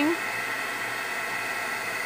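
Handheld embossing heat gun running, a steady rush of air with a faint motor whine, as it melts clear embossing powder.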